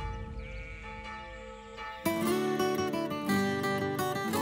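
Church bells ringing and fading away. About halfway through, a plucked-string theme tune starts abruptly.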